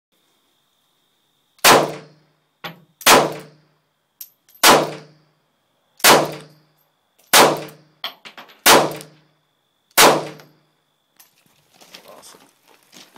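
Smith & Wesson Bodyguard .380 ACP pocket pistol fired seven times in slow, steady succession, one shot every one and a half seconds or so, each with a short ringing tail. A few fainter clicks fall between the shots, and handling noise follows the last one.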